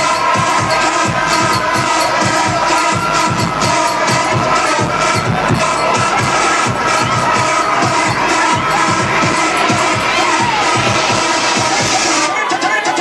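Loud dance music from a DJ set played over a club sound system, with a steady beat and held synth tones, and crowd noise and cheering mixed in.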